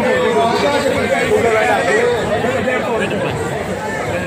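A crowd of people talking over one another, many overlapping voices chattering at once with no single clear speaker.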